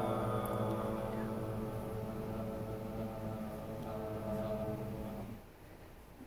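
A small a cappella group of voices holding a sustained chord that slowly grows softer, then cut off together a little past five seconds in.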